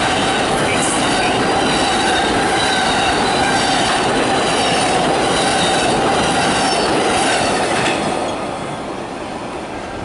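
Amtrak Superliner bilevel passenger cars rolling past close by: a loud, steady rush of steel wheels on rail with a thin, steady wheel squeal over it. The noise fades from about eight seconds in as the end of the train passes and draws away.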